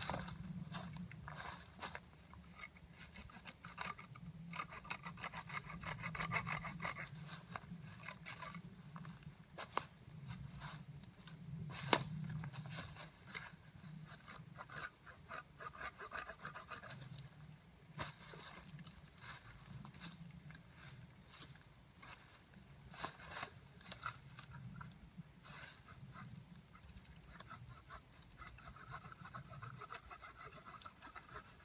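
Dry leaf litter and twigs rustling, scraping and crackling as the forest floor is raked clear by hand, in irregular bursts with a few sharper snaps.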